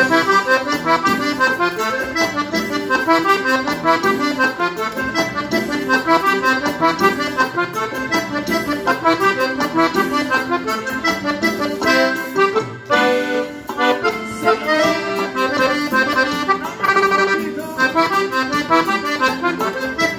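Gabbanelli three-row diatonic button accordion in FBbEb (F) tuning, playing a quick cumbia melody harmonised in C, with notes in rapid succession and a brief break about two-thirds of the way through.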